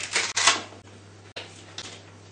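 Two short rasping rips in the first half-second as a Velcro-backed picture card is pulled off a PECS communication strip, over a low steady hum.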